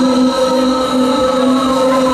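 Electronic dance music from a fairground ride's sound system: one long held synth chord without drum hits.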